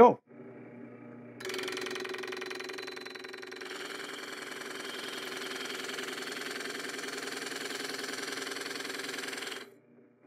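Drill press running at about 600 RPM with a rosette cutter's blades spinning into a plywood test piece, cutting a shallow rosette channel. A steady machine sound of several tones starts about a second and a half in and cuts off suddenly near the end.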